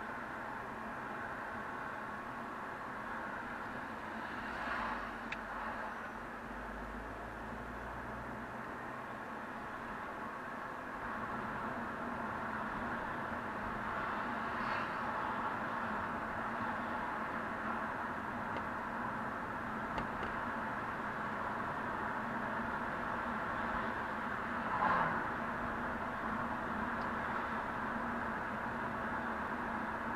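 Steady road and engine noise of a moving car heard from inside the cabin, picked up by a dashcam, with a few brief swells along the way.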